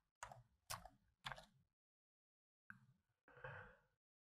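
Near silence, broken by three faint short clicks in the first second and a half and a faint soft sound near the end.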